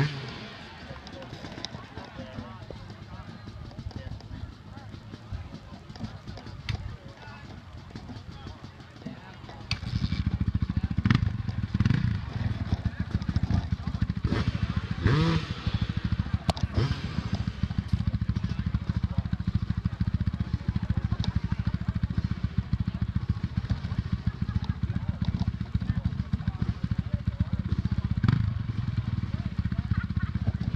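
A dirt bike engine starts running close by about a third of the way in and holds a steady idle, over scattered chatter from spectators.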